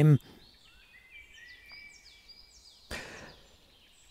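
Faint songbirds singing in the forest: many short, high whistled notes and glides. A brief soft noise comes about three seconds in.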